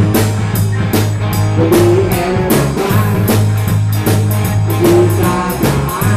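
Live band playing: drum kit with cymbals keeping a steady beat, electric guitar and bass guitar, the bass holding low sustained notes.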